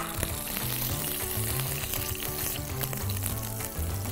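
Butter and olive oil sizzling in a hot pan on the stove, a steady hiss, with low background music underneath.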